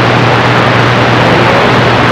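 CB radio receiver in receive mode putting out loud, steady static from an open channel, with a low hum underneath and no station coming through.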